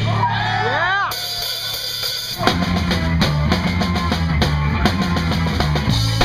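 Live ska punk band starting a song: after a second of gliding, arching tones and a short lull with a steady hum, the drum kit and electric bass come in together about two and a half seconds in and play a steady beat.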